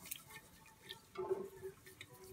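Silicone-coated whisk stirring milk and sugar in an enamel pot: soft swishing with faint light ticks of the wires against the pot. A faint low hum comes in about halfway through.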